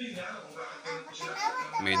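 A child's voice talking, with children playing.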